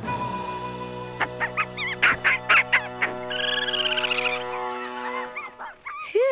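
Cartoon compy dinosaur calls: a quick run of short squawking chirps about a second in, then a warbling trill, over steady background music.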